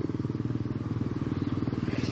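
A small engine running steadily: a low, rapidly pulsing rumble.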